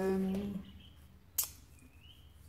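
A woman's drawn-out hesitation sound ('euh') trails off in the first half second. Then there is quiet room tone with a single sharp click about one and a half seconds in, and a couple of faint high chirps.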